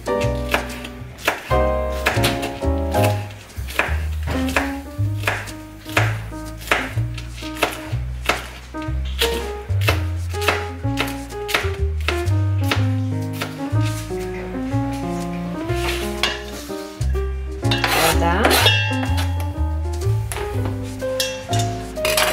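Background music with a steady bass line, over which a ceramic knife chops green onions on a plastic cutting board in a run of quick, sharp strokes.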